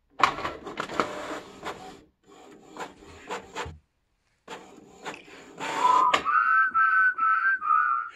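Canon inkjet printer feeding and printing a sheet, its mechanism clattering in two spells with a brief pause between. About six seconds in, a whistled tune begins and carries on over the printer.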